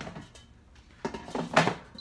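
Air fryer basket drawer being pushed back into the air fryer: a faint click near the start, then a short run of knocks and rattles about a second in, loudest as the drawer clunks home.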